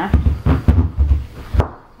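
Chef's knife pressed down through a wedge of green cabbage onto a plastic cutting board: several dull knocks and thuds as the blade cuts along the rib and meets the board.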